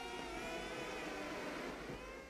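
Soft background score of sustained, held notes.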